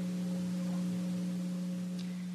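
A steady low electrical hum, one tone with a few weaker overtones, over faint hiss: the constant hum of the sound system or recording chain.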